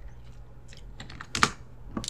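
Typing on a computer keyboard: a few light keystrokes, then one louder, sharper click about a second and a half in.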